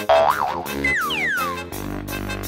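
Comic cartoon sound effects over light background music: a wobbling boing just after the start, then a tone that glides down in pitch about a second in.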